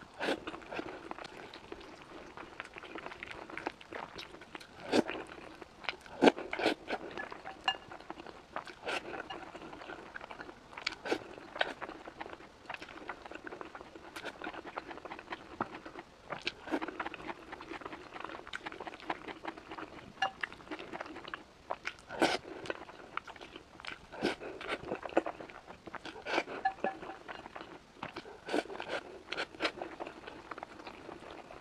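A person chewing and biting food close to a clip-on microphone, with irregular crisp crunches and clicks, a few louder ones standing out.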